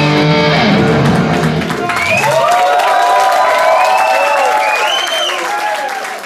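A live rock band holds a loud sustained final chord with electric guitar. The low end cuts off about two seconds in, and the audience takes over with cheers, shouts and whistles as the song ends.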